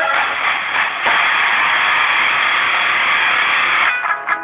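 Heavily distorted electric guitar played as a dense, noisy wash of sound, with a brief dip about a second in.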